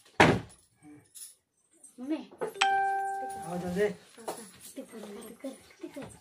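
A plastic bottle partly filled with liquid flipped and landing on a table with one sharp thud. Voices follow, with a steady ringing tone held for about a second in the middle.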